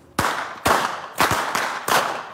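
Long hand-twisted rope whip cracked repeatedly, a quick series of loud sharp cracks at roughly two a second, each trailing off in a brief echo.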